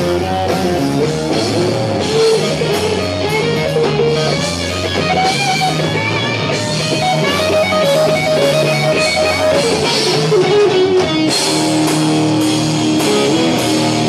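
Live heavy rock band playing: electric guitar lines over drum kit and a steady low bass line.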